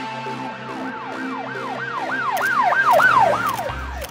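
Emergency siren in a fast yelp, its pitch sweeping up and down about three times a second, growing louder until about three seconds in and then fading, over electronic music with steady held notes.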